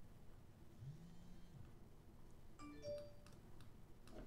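Near silence, with a faint low bass note bending up and back down about a second in, then a short faint higher pitched note and a few light clicks near three seconds in.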